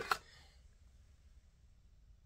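Near silence: room tone, with the tail of a spoken word at the very start.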